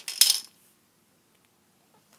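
A plastic Connect 4 checker dropped into the upright grid, clattering briefly as it falls down its column.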